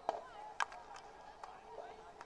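Two sharp knocks about half a second apart, over faint distant voices.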